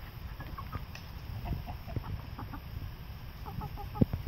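Several chickens clucking in short, scattered calls over a steady low rumble.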